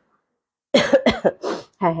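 A person coughing in three quick bursts about three-quarters of a second in, followed by a short spoken word.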